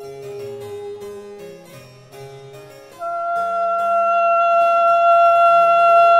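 Baroque chamber music: a harpsichord plays plucked chords and a moving bass line under a melody instrument holding long notes. About halfway through, a loud high note enters and is held, and the music grows much louder.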